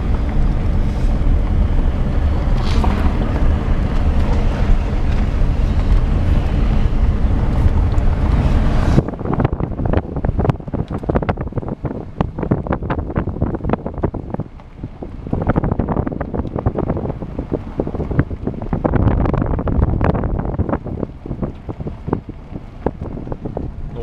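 Loud, steady wind noise and road rumble from inside a moving car. It cuts off abruptly about nine seconds in and gives way to quieter, uneven tyre noise with many small crackles and pops as the car rolls over a dirt and gravel surface.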